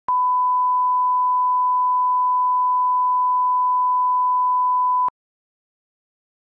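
A steady 1 kHz line-up tone played under colour bars, one unbroken beep that starts and stops with a click and cuts off about five seconds in.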